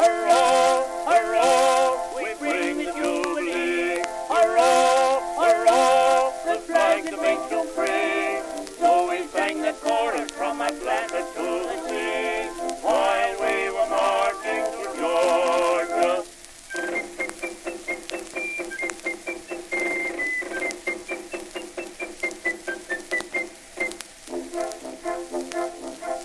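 Early acoustic gramophone recording of a male singing duet with band accompaniment: voices with heavy vibrato sing for about the first 16 seconds, then give way to an instrumental break carried by a high, piping tune of short separate notes.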